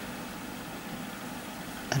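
Steady, even background hum of room noise with no distinct events; a spoken word begins right at the end.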